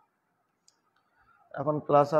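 Near silence with one faint click, then a man's voice starts speaking about one and a half seconds in.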